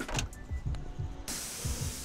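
Electric pressure washer, powered through an inverter off solar power, starting to spray when its trigger is squeezed: a sudden steady hiss of the water jet begins just past halfway and keeps going.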